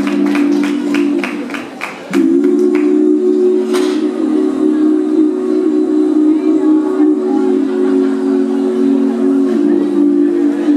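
Live band opening a song with a sustained, held chord that shifts to a new chord about two seconds in and again near the end, over a quick ticking beat in the first few seconds.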